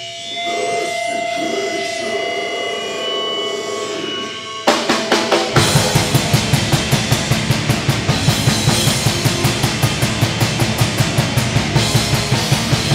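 Live band: distorted electric guitars hold ringing notes with no drums, then just under five seconds in the full band comes in with the drum kit playing a fast, steady beat of about five hits a second, bass drum and snare, under the guitars.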